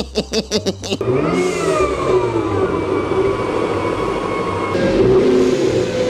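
BMW saloon engine with a bonnet-mounted supercharger revving on a chassis dyno: the engine note climbs, then holds at high revs. The supercharger gives no boost; the owners say it has failed.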